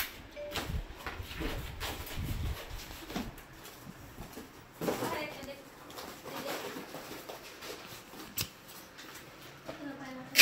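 Quiet, indistinct talk in a small room, with the rustle and knock of cardboard and paper being handled, and one sharp click late on.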